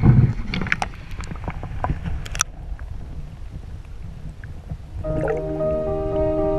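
Water splashing as a giant snakehead is let go over the side of a boat, with scattered knocks and clicks against the hull. About five seconds in, background music with long held notes begins.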